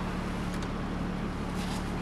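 Steady low hum inside a Jaguar XF's cabin, with a faint click about half a second in.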